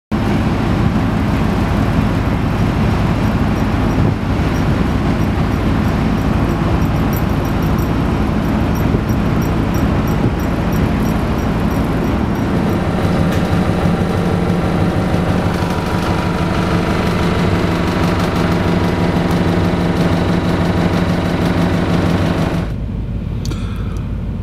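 Car ferry's engines droning steadily under a loud, even rushing noise on the open deck, with a faint regular ticking for several seconds in the first half. Shortly before the end it cuts to the quieter hum heard inside a car parked on the ferry's car deck.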